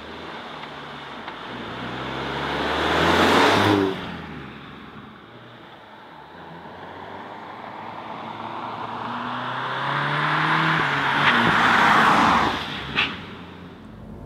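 Volkswagen Golf GTI Clubsport's two-litre turbocharged four-cylinder engine accelerating past twice, its note rising as the car approaches and tyre noise peaking as it goes by, once a few seconds in and again near the end.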